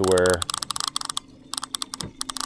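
Baitcasting reel's line-out clicker clicking rapidly and unevenly as line is drawn off the spool, with a brief pause just past halfway.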